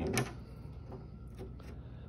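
A short sharp click just after the start, then a few faint clicks and scrapes, as the door-pin guide block is popped out of the fiberglass door's recess.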